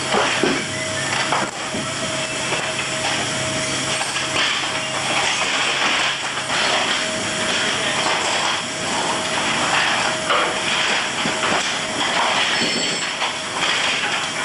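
Metal tie-down chains and hooks clanking and knocking again and again as cargo is chained down, over a loud steady machinery noise. A low hum underneath stops about six and a half seconds in.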